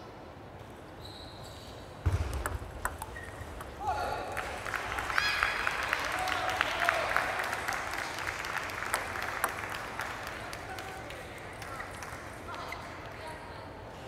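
Table tennis balls clicking against paddles and tables in a string of light, sharp knocks, under background voices with a couple of short shouts.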